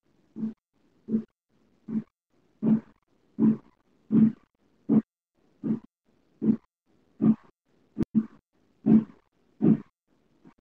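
Soundtrack of an animated science clip played over a web-conference screen share: low, evenly spaced pulses, about four every three seconds, with a sharp click about eight seconds in.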